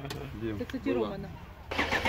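A vehicle engine idling low and steady under faint distant voices; louder noise and nearby voices come in near the end.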